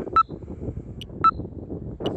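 Two short high electronic beeps about a second apart, from the falconry telemetry tracking receiver, over a low rumble of wind on the microphone.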